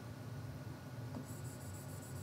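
Faint scratching of a pen moving across a digital touchscreen board as words are highlighted, over a steady low hum.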